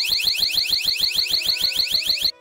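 Mosaic Alarm MA20 motion sensor alarm's siren sounding: a loud, high-pitched warble of quick rising sweeps repeating about nine times a second.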